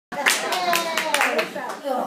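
Brief applause from a small audience: a handful of separate, uneven claps that die away about a second and a half in, with a voice talking over them.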